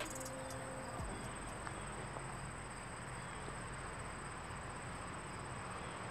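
Insects trilling steadily in one high, finely pulsed tone, over a faint outdoor hiss.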